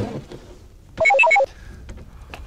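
A short electronic melody, about a second in: a rapid run of about half a dozen clipped beeping notes lasting under half a second, like a phone ringtone.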